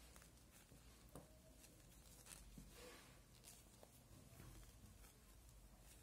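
Near silence, with faint scattered ticks of knitting needles and yarn as stitches are worked.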